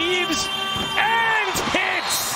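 Sports commentator shouting an excited, drawn-out call over arena crowd noise as a buzzer-beating shot falls.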